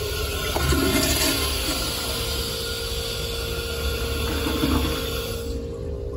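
Commercial toilet flushing: a steady rush of water swirling down the bowl that cuts off sharply about five and a half seconds in.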